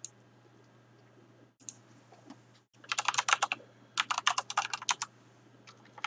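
Typing on a computer keyboard: a single click at the start, then two quick runs of keystrokes about three and four seconds in, and a few more keys near the end.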